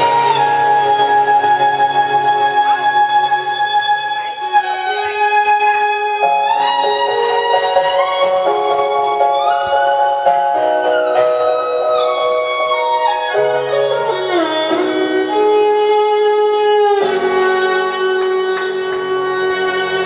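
Violin playing a slow melody of long held notes, with sliding changes of pitch between some of them.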